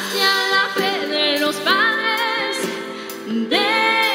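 Music: a woman singing a Christian song over instrumental accompaniment, holding long notes with vibrato.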